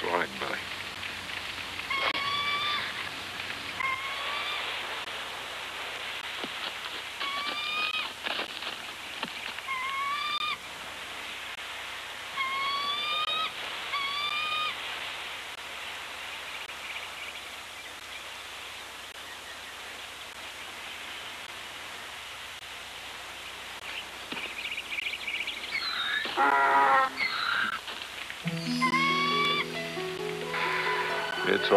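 A hawk giving a series of short, rising, whistled cries, about eight in the first fifteen seconds, over a steady hiss. Film score music comes in near the end.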